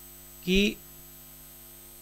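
A steady, low electrical hum at several fixed pitches fills a pause in speech. It is broken about half a second in by one short spoken word.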